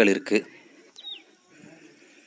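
A man's voice trails off in the first half second, then a bird gives one short, high chirp that falls in pitch, about a second in.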